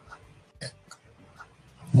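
A quiet pause between spoken lines: faint background with one brief, soft hiss about half a second in, then a man's voice starting right at the end.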